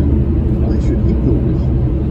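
Steady low rumble of a car driving at highway speed, heard inside the cabin: tyre and engine noise, with a voice reading faintly over it.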